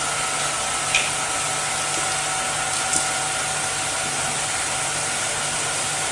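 Steady hiss with a low hum and two faint steady tones above it, the background noise of a microphone and sound system; faint clicks about a second in and again near three seconds.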